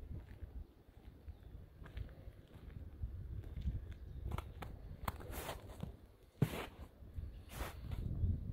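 Footsteps of a person walking, faint at first, then a handful of sharper scuffing steps in the second half, over a steady low rumble.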